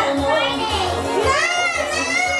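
Young children's voices: chatter early on, then high-pitched squeals that rise and fall in pitch from about halfway through.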